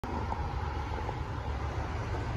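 Steady low outdoor rumble of wind on the microphone and road traffic, with a couple of faint ticks.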